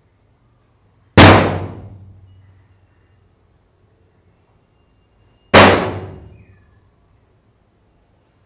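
Two loud, sudden bangs about four and a half seconds apart, each ringing out and fading over about a second and a half.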